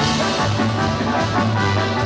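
Live band music, led by a saxophone, over a moving bass line and a steady beat of percussion.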